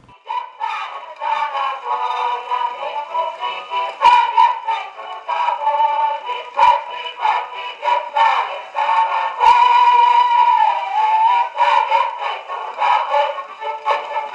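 Music from a 78 rpm record played on a portable wind-up gramophone: a melody that sounds thin, with no bass.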